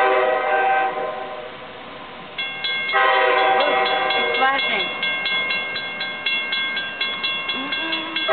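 Train horn sounding in long blasts as it approaches a level crossing. About two and a half seconds in, the crossing's warning bell starts dinging rapidly and steadily as the signal lights begin flashing, and the horn sounds over it again.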